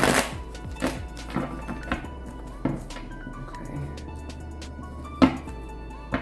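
Deck of tarot cards being riffle-shuffled with a quick rushing flutter at the start, then handled and shuffled with scattered soft clicks and one sharp snap about five seconds in. Soft background music runs underneath.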